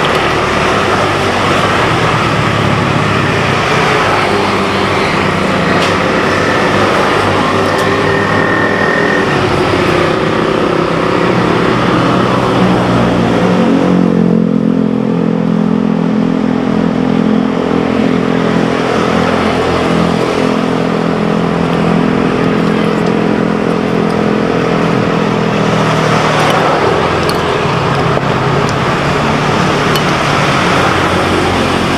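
Road traffic running steadily close by. A steady engine hum joins about halfway through and fades out near the end.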